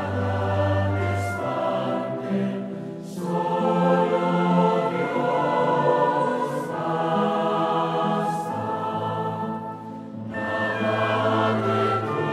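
Choir singing a hymn in held chords, breaking briefly between phrases about three seconds and ten seconds in.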